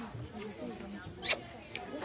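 Faint background voices in a pause between the main speaker's words, with one brief sharp hiss-like sound just after a second in.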